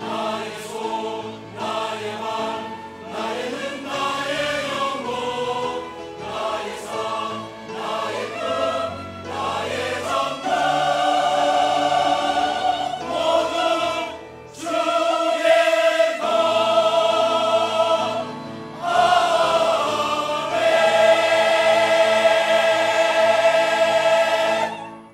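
Large mixed church choir singing with piano and string ensemble accompaniment, moving from short phrases into long held chords and ending on a sustained final "Amen".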